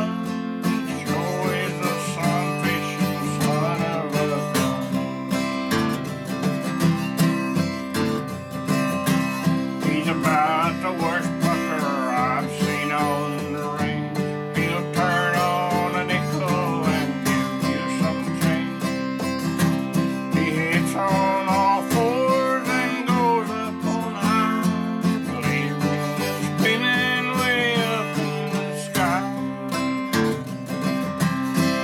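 Steel-string acoustic guitar strummed in a steady country rhythm, with an older man singing an old cowboy ballad over it.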